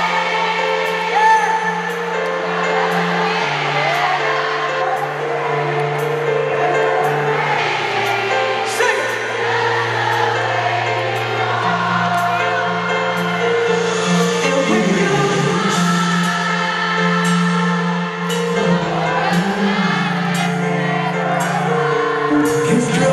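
Live pop band playing the chorus of a slow pop song, with bass, electric guitars and steady percussion, while an arena crowd sings along with the lead singer.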